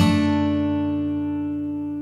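Instrumental passage of a worship song: an acoustic guitar chord is strummed at the start and left to ring, fading slowly.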